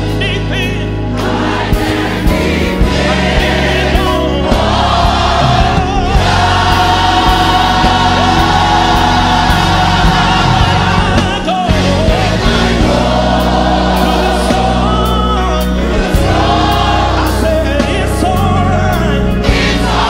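Gospel mass choir singing with a male lead singer and instrumental backing, loud and continuous.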